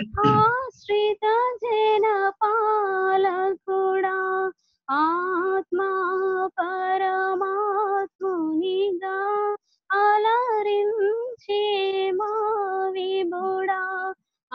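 A young woman singing a Telugu Christian song solo and unaccompanied, in held, gliding phrases with short breaks for breath between them, heard over a video call. A brief burst of noise comes at the very start.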